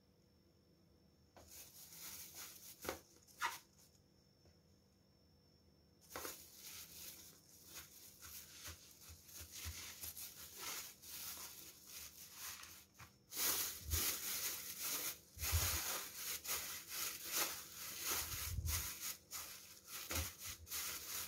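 Thin plastic bag crinkling and rustling as hands press grated carrot down into a bag-lined plastic container, in short bursts that get louder in the second half. A few soft, dull thumps of pressing come in the later part.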